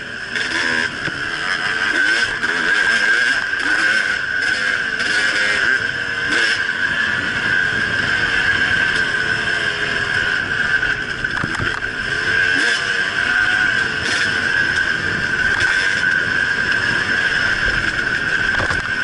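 The onboard 2010 Husqvarna WR300 two-stroke dirt bike engine revving up and down as it is ridden along a bumpy dirt trail. Occasional sharp knocks come from the bike hitting bumps.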